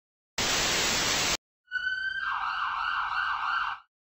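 A burst of hiss lasting about a second, then a siren sound effect: a steady high tone that soon breaks into a fast warble and cuts off near the end.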